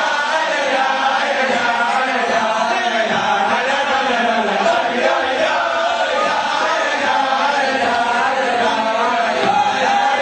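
A group of male voices singing together in a chant-like melody, continuous and unbroken.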